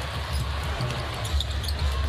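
Basketball being dribbled on a hardwood court, repeated low thumps under a steady arena crowd noise.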